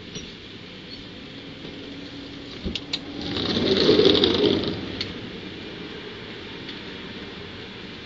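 A few sharp clicks, then a rustling whoosh that swells and fades about four seconds in as a person gets up and moves close past the microphone, over a steady low background hum.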